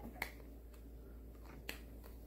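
A few small, sharp clicks of a plastic glue stick being handled: one just after the start and another about a second and a half later, with fainter ticks between.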